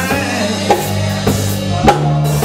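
Church band playing slow gospel music: held bass notes under a drum kit, with two sharp snare hits about a second apart.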